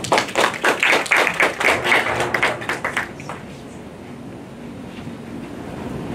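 A small audience applauding, a dense patter of hand claps that dies away about three seconds in.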